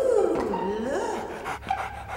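A dog whining, its pitch falling and then rising over about a second, followed by a run of short quick breaths.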